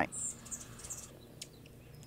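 Faint, high-pitched bird chirps, one near the start and a few fainter ones after, over quiet background, with a single light click about halfway through.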